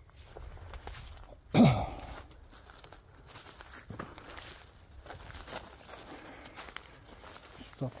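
Footsteps rustling and crunching through dry fallen leaves and twigs, with scattered small snaps. About a second and a half in there is one short, loud vocal sound from the walker that falls in pitch.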